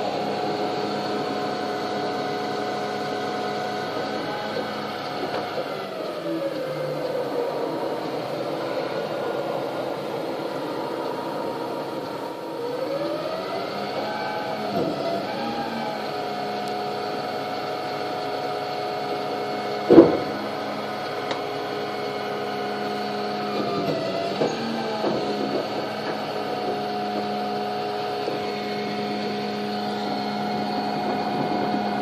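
Volvo refuse collection truck's diesel engine running, its pitch dropping and rising several times as the engine speed changes while the rear bin lift works. One sharp bang stands out about twenty seconds in.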